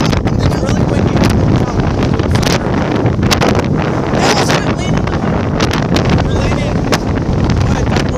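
Strong wind buffeting a phone's microphone: a loud, continuous low rumble with frequent crackles as the gusts hit.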